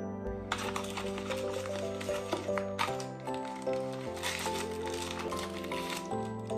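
Background music with steady sustained tones, over an irregular crinkling of clear plastic packaging being pulled off a derma roller.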